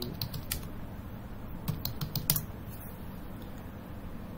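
Computer keyboard keys being typed: a short run of clicks at the start and another about two seconds in, with no keystrokes after that, over a steady low background hum.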